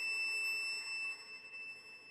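Solo violin holding one very high, thin, whistle-like note that slowly fades away.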